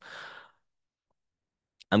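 A man's short breath, about half a second long, then silence until he starts speaking again near the end.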